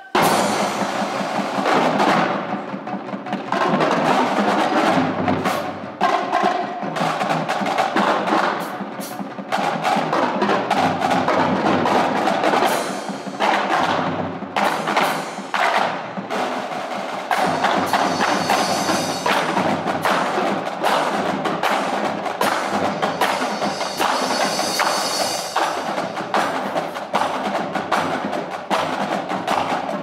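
A drumline and its front ensemble playing a loud percussion piece: snare, tenor and bass drums with mallet keyboards, dense rapid strikes and rolls. It begins suddenly right at the start.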